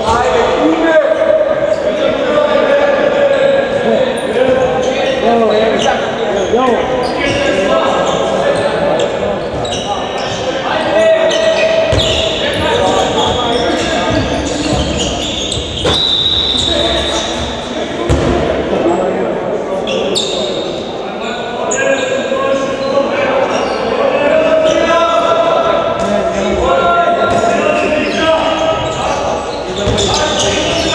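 A handball bouncing on a hardwood sports-hall floor amid players' shouts and calls, with the reverberation of a large indoor hall.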